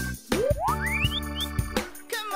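Children's music with a cartoon sound effect: a whistle-like tone glides steeply up in pitch about a third of a second in, followed by a short second upward chirp.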